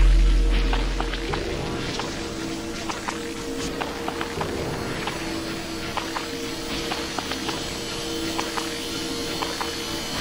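Intro of a riddim dubstep track: a deep bass boom fades out over the first second or so, then a quieter passage of held synth tones with scattered short clicky percussion.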